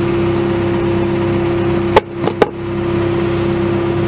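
Steady machine hum at one fixed pitch, like an engine running, with two sharp knocks about two seconds in, under half a second apart.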